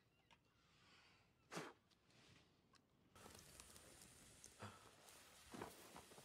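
Near silence: faint room tone with a few brief soft sounds, and a low hiss that comes up about three seconds in.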